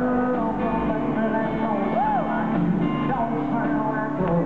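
Live country-rock band music playing in an arena, guitars prominent. About halfway through, one note bends up and back down.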